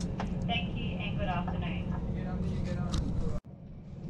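Steady low rumble of a Queensland Rail Tilt Train running, heard from inside the passenger carriage, with faint voices over it. The sound cuts off abruptly about three and a half seconds in and gives way to a quieter background.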